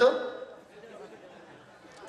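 A man's voice amplified through microphones and loudspeakers breaks off right at the start and dies away in the echo. A pause of faint background noise follows, and speaking resumes at the very end.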